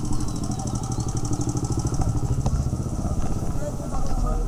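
Small motorcycle engine running steadily with a rapid, even pulse, under indistinct street chatter.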